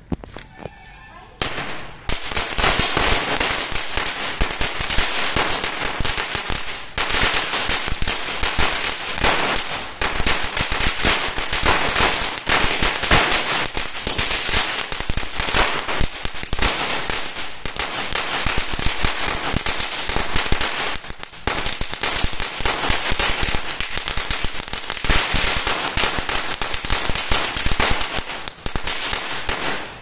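Starvell "90 Watts" ground firecracker going off: a rapid, unbroken string of sharp pops and crackles that starts about a second and a half in, with only a few momentary lulls.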